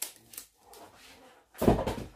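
Tin cans being handled and set down on a counter: a light click at the start, then about a second and a half in a dull, heavy thud.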